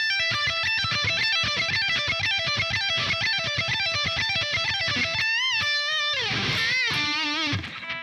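Electric guitar repeating a fast pull-off lick high on the neck (17–15–12 on the high E string, then 15 on the B) for about five seconds. Near the end come held bent notes with wavering vibrato and a sliding drop in pitch.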